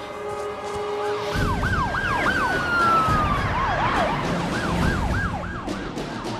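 Several police car sirens sounding at once, fast repeated yelps overlapping a long falling wail, coming in about a second in over a low vehicle rumble and growing louder as the cars approach. A steady held note of the film score is heard before the sirens start.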